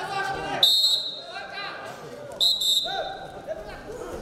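A referee's whistle blown in two short, steady, high-pitched blasts about two seconds apart, stopping the action in a wrestling bout, over crowd voices in a hall.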